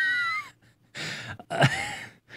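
A man laughing under his breath: an airy exhale with a brief high squeak at the start, another breath about a second in, then a short "uh" near the end.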